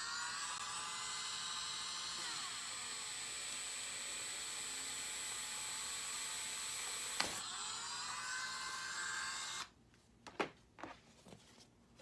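Dremel rotary tool with a small sanding barrel running at high speed as it is pressed down through EVA foam to bore a hole. Its whine dips in pitch and recovers, with one click partway through. It is switched off a couple of seconds before the end, followed by a few light knocks as it is set down.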